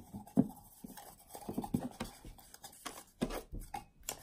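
Light handling sounds: a scatter of soft taps, clicks and rustles from hands moving small objects at a table.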